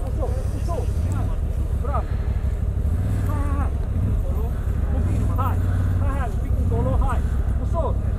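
CFMoto 1000 ATV's V-twin engine running steadily at low revs as the quad crawls up a steep, rutted dirt gully. Faint voices call out over the engine.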